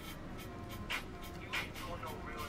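Rap music playing faintly: a beat with sharp, evenly spaced ticks under a rapped vocal.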